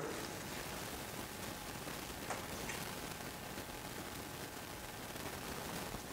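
Faint steady hiss with a few soft ticks: acrylic paint dripping off a canvas edge into an aluminum pan below.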